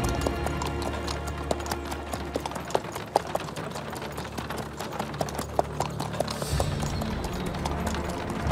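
Horses' hooves clip-clopping on a dirt road as riders and a horse-drawn carriage approach, many quick uneven hoofbeats, over background music.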